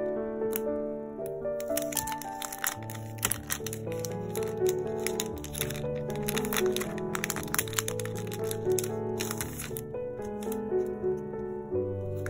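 Piano background music, with the crackling and crinkling of a clear plastic packaging sleeve being handled from about two seconds in, thinning out near the end.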